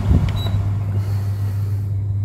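Carrier floor-standing air conditioner running with a steady low hum. A soft click near the start and a short high beep about half a second in come from its control panel as a button is pressed and the set temperature changes.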